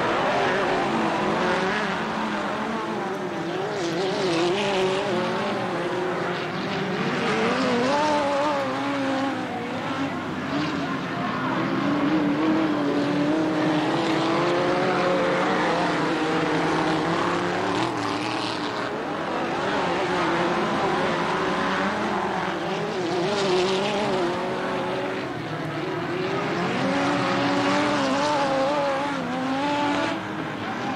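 Several midget race car engines running at racing speed on a dirt oval, their engine notes rising and falling as the cars pass and circle the track.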